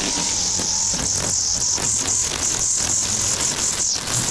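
String trimmer running at speed, its line whipping through grass along a stone foundation with a steady high whine and frequent brief crackles as it strikes the growth.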